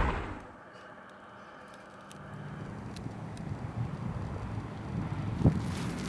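The echoing tail of a loud gunshot dies away over the first half second. Then a low steady rumble rises from about two seconds in, with a single short knock near the end.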